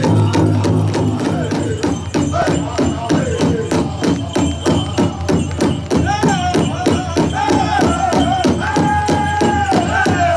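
Powwow-style drum group playing a steady, fast drumbeat for hoop dancing, with singers' voices coming in on long, high held notes about six seconds in.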